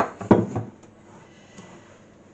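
A few sharp knocks in the first half-second as a metal bun tray and a glass mixing bowl are slid and set down on a kitchen worktop, then only faint room noise.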